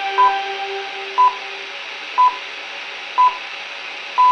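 Hourly time-signal pips on Vesti FM, played through a Sokol 304 portable radio's speaker on medium-wave AM reception with a background hiss: four short beeps a second apart, counting down to the top of the hour. Held notes from the end of a station jingle fade out about two seconds in.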